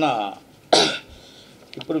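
A man clears his throat with one short, sharp cough under a second in, between bits of speech.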